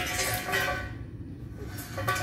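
A steel tractor implement dragged and scraped across gravel, most audible in the first second, over a faint steady low engine-like hum.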